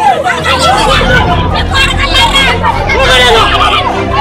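A crowd of protesters and police shouting and crying out over one another in a scuffle, with shrill, high-pitched cries among the voices. A low vehicle-engine rumble runs underneath from about a second in.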